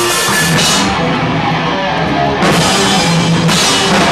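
A live powerviolence band playing loud distorted guitar over a pounding drum kit, with cymbals crashing in near the start and again from about two and a half seconds in.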